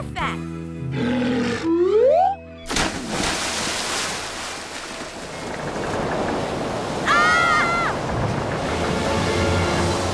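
Cartoon sound effect of a huge ocean wave: a loud, steady rush of water that comes in sharply about three seconds in, after a short stretch of music with a rising slide. Around seven seconds in, a character's short cry sounds over the rushing water.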